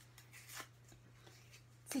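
Quiet room with a steady low hum, and a faint brief rustle about halfway through as a small paper card is handled.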